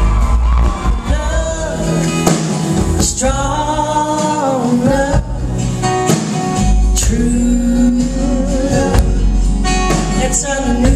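Live country band music: a woman singing long held notes at the microphone over acoustic guitars and upright bass, heard loud through the hall's sound system from the audience.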